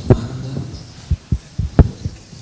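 A series of five or six dull, low thumps, irregularly spaced, from a handheld microphone being handled.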